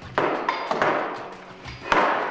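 Metal parts of a Mark 19 grenade launcher clanking as the charging handle assembly is slid back off the receiver and set down on the table: a few sharp knocks with a short ring, the loudest near the end.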